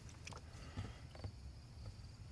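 Faint crickets chirping in the background, with a few soft handling clicks.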